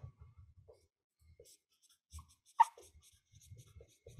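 Dry-erase marker squeaking faintly on a whiteboard in short strokes as words are written, with one louder, sharp stroke about two and a half seconds in.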